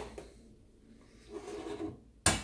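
Faint handling noises, with a soft rubbing sound near the end as a glass mug of milk is shifted on a countertop.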